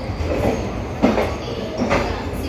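Coach of the Satavahana Superfast Express rolling slowly into a station, heard from aboard: a steady low rumble of the running train, with two sharp knocks, one about a second in and one near the end.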